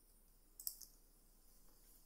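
Near silence: room tone, with one faint computer mouse click about two-thirds of a second in.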